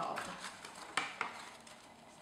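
Folded paper signatures of a hand-sewn booklet rustling as they are handled, lifted and turned over, with a few light clicks and knocks about a second in.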